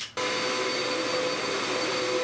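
Red upright vacuum cleaner switched on with a click, its motor starting suddenly and running steadily with a high whine.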